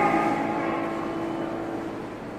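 The last piano chord ringing out and fading away, one low note holding longest until about a second and a half in.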